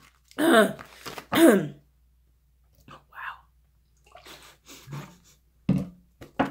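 A woman clearing her throat twice in quick succession in the first two seconds, each with a falling pitch. This is followed by a few faint, soft rustles.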